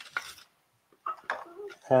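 A few light clicks and taps from handling a cardboard box of straws as a straw is drawn out, with a brief quiet spell in the middle.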